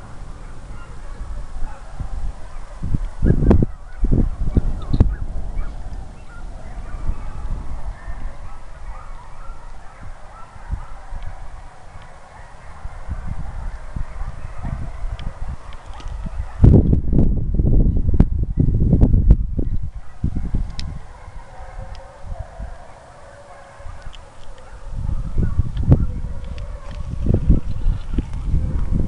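A pack of hounds baying faintly in the distance, while the trial dogs run. Gusts of wind rumble on the microphone, loudest about two-thirds of the way through and again near the end.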